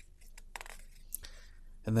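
Pages of an old printed owner's manual being turned by hand: a few light, crisp paper crackles and rustles.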